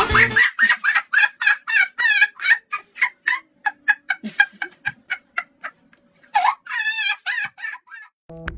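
Chicken clucking in a rapid run of short calls, three or four a second, breaking into a longer wavering cackle near the end.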